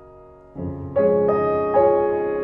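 Slow background piano music: a held chord fades away, then new notes are struck about half a second in and again around one and one and a half seconds, each ringing on and decaying.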